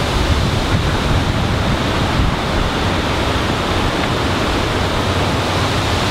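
Wind blowing across the microphone: a steady noise, heaviest at the low end.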